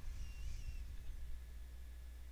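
Near-quiet pause: a faint, steady low hum of background room tone, with a faint, brief high warble in the first second.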